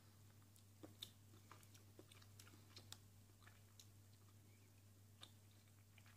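Faint mouth sounds of someone chewing a bite of Fry's Turkish Delight, a chocolate-coated jelly bar: scattered small soft clicks, the loudest about a second in, over a low steady hum.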